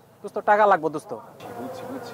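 A man's voice speaking a short phrase, then a steady buzzing drone that sets in about halfway through and continues under quieter talk.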